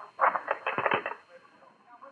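Sound effect of a field telephone being picked up: a quick rattle of clicks lasting under a second, then quiet hiss.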